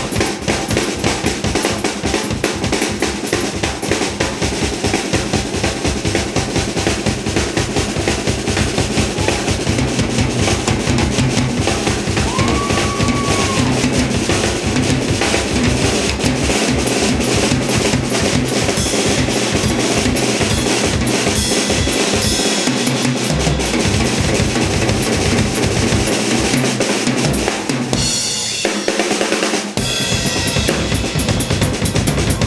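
Drum solo on a Yamaha drum kit: fast, dense strokes on bass drum and snare with cymbals, loud and steady. Near the end the bass drum drops out for about a second and a half, leaving cymbal, before the full kit comes back in.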